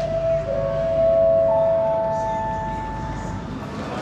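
Airport public-address chime: three steady notes entering one after another (a middle note, then a lower one, then a higher one), held together and fading out about three and a half seconds in.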